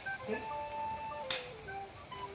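Background music: a slow melody of held notes stepping between pitches, with one short sharp click a little over a second in.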